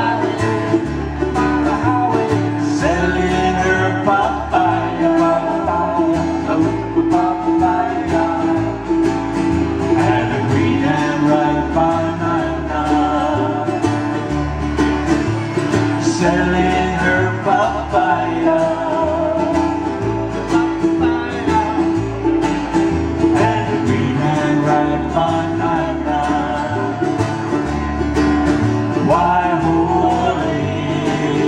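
A Hawaiian song played live on acoustic guitars and 'ukulele, strummed and plucked, over a bass line whose low notes change about once a second.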